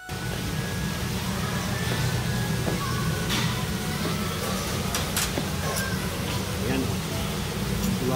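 Restaurant dining-room noise: a steady low hum under indistinct talk from other diners.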